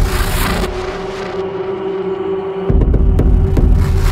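Dark industrial techno: a heavy, distorted bass rumble that drops out under a second in and comes back near three seconds, over a steady held drone, with sharp clicks and hissing noise swells.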